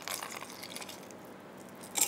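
Ice cubes placed by hand into a tall drinking glass, clinking lightly. One short clink at the start, a few faint knocks as the cubes settle, and a sharper clink near the end.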